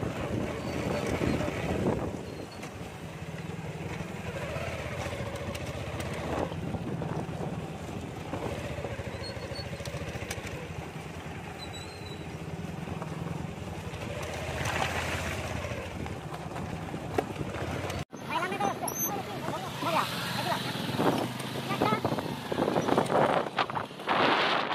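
Small motorcycle engine running steadily at low speed on a rough dirt track. About three-quarters of the way through the sound cuts off abruptly and voices follow.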